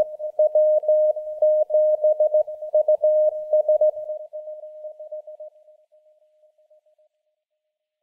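Morse code (CW) sent as a single steady tone keyed on and off in short and long elements, fading away over the last few seconds and stopping about seven seconds in.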